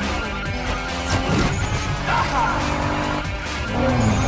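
Tuned sports-car engines revving hard as the cars race, layered with a film music soundtrack.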